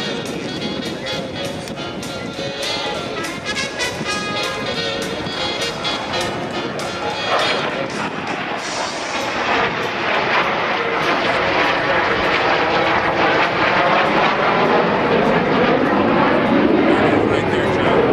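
Music from the public-address system plays over roughly the first half. From about eight seconds in, a Learjet's jet engines take over as a rushing noise with a sweeping, phasing quality, growing steadily louder as the jet passes.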